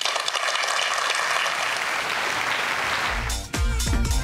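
Audience applause, fading slightly; a little over three seconds in, electronic music with a steady heavy beat comes in.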